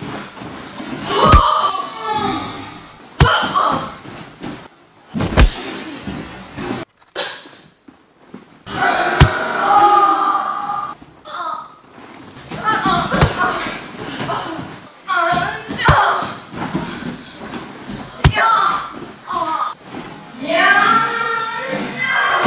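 Bare-fisted punches and knees landing on a body, about eight sharp slaps and thuds spread out, between a woman's pained cries and groans.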